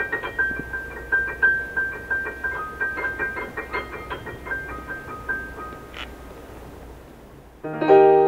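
Digital piano playing a quick, light run of repeated high treble notes that thins out and fades away. After a brief lull near the end comes a loud full chord in the middle and lower register.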